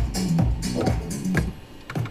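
Two 125 BPM house tracks beatmatched and playing together through DJ decks: a steady four-on-the-floor kick with hi-hats, about two beats a second, locked in time. The music drops away about one and a half seconds in.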